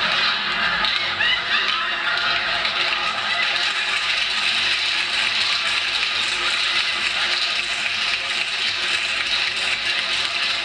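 Audience laughing and applauding steadily after a punchline.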